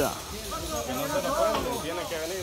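Quieter voices talking indistinctly, over a faint steady hiss.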